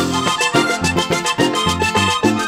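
Vallenato band playing live: a button accordion carries the melody over electric bass notes and a steady hand-drum and percussion rhythm.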